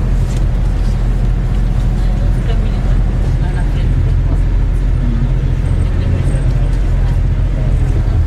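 Tour bus driving at highway speed, heard from inside the passenger cabin: a steady low engine and road rumble.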